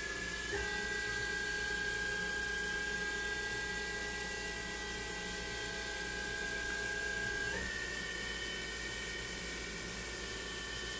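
Hardinge/Bridgeport GX1000 machining center spindle running with a steady high whine over a hiss. The pitch steps to a new speed with a small click about half a second in, then shifts again about three-quarters of the way through.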